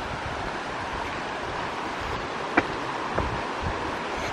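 Steady outdoor rushing noise with soft footfalls on a dirt forest trail and light jostling of the camera as a hiker walks.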